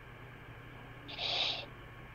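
A man's short intake of breath, a soft hiss lasting about half a second, just after the middle, over faint room tone.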